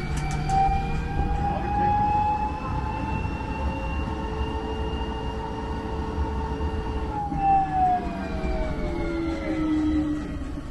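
Tour tram's drive whine over a low rolling rumble as it travels along a paved road: a pitched whine that rises a little, holds steady, then glides down from about seven seconds in as the tram slows.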